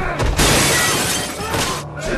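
Plate glass shattering as a body is smashed into a storefront window, the crash loud and fading over most of a second, followed by a second, shorter crash about a second and a half in.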